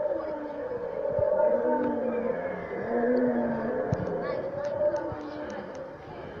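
Recorded dinosaur calls from a loudspeaker: several long, low moaning calls that glide slowly in pitch.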